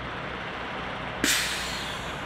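Heavy diesel trucks running slowly in convoy with a steady low engine hum. About a second in there is a sharp air-brake hiss that fades within a second.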